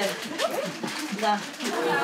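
Several people talking at once in a crowded small room, voices overlapping.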